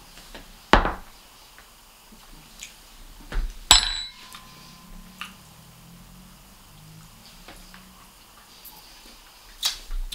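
A fork clinking against a small glass jar. There is a sharp click about a second in, then a louder clink about three and a half seconds in that rings briefly, with a few faint knocks after.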